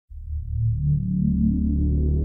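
Electronic background music starting abruptly at the very beginning: a deep, sustained synthesizer drone with slowly shifting notes above it.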